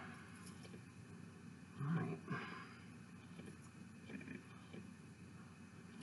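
Quiet room tone with a low steady hiss, broken once about two seconds in by a woman saying "alright".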